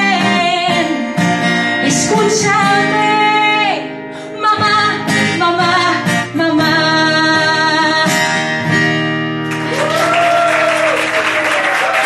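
A woman singing with her own acoustic guitar, holding long sustained notes over strummed chords. About nine and a half seconds in, the song stops and is followed by audience applause with a voice over it.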